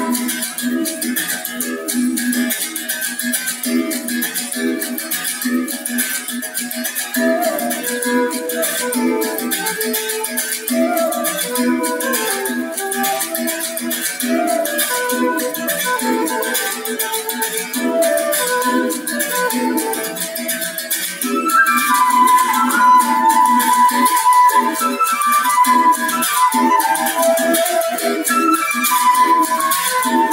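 Live duo of flute and berimbau: the berimbau's string is struck with a stick in a steady rhythmic pattern of low twanging notes under a flute melody. About two-thirds of the way through, the flute's line comes in louder and higher.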